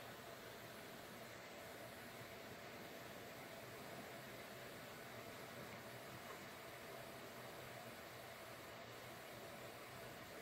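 Near silence: a steady faint hiss of room tone with a low hum.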